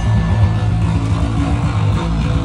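Live rock band playing loud in a small room: electric guitar and bass guitar, the sound heavy in the low end and running on without a break.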